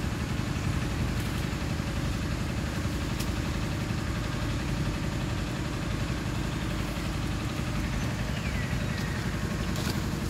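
Steady low drone of an idling engine that runs on without change.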